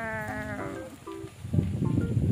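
Light keyboard background music with short held notes. In the first half second the tail of a long, slowly falling held call fades out.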